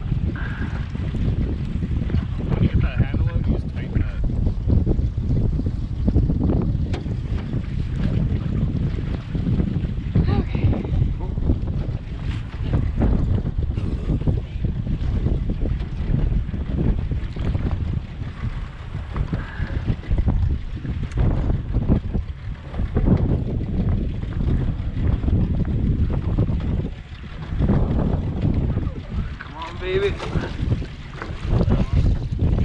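Wind buffeting the microphone in an open boat on choppy lake water, a heavy, uneven rumble with waves lapping at the hull.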